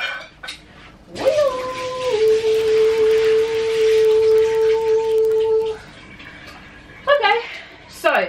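Water being poured off a pot into a kitchen sink, a steady rush lasting about four and a half seconds, with a steady pitched tone alongside it that drops slightly near its start and then holds. The water is the overnight soaking water, salty from the saltfish, being drained away.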